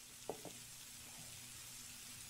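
Food sizzling faintly in a frying pan, with two or three light clicks of a spatula against the pan about a third of a second in.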